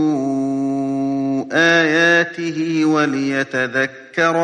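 A man reciting the Quran in Arabic in melodic tajweed style. He holds one long, steady note for well over a second, then sings a few shorter phrases that slide up and down in pitch.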